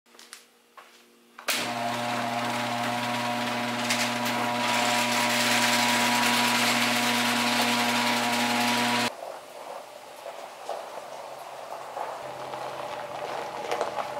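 Electric garage door opener running as the door rises: a steady motor hum that starts suddenly about a second and a half in and cuts off about seven and a half seconds later.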